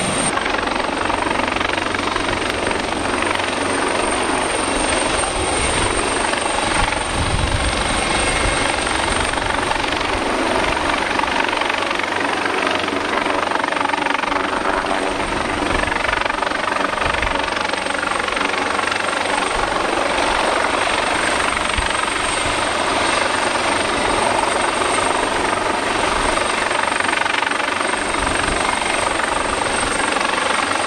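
AgustaWestland AW139 helicopter flying low and close: a steady, loud rush of main-rotor noise with a thin high whine from its twin turboshaft engines running through it.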